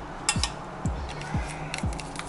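Light clicks and crinkling from a soft plastic mustard pouch being squeezed out over a stainless steel pot. Background music with a steady low beat, about two thumps a second, runs underneath.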